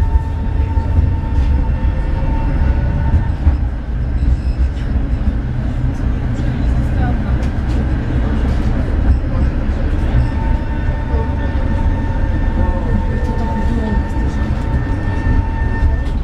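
Tram running along street track, heard from inside: a steady low rumble of wheels and running gear, with a steady high-pitched whine that drops out for a few seconds in the middle and then returns.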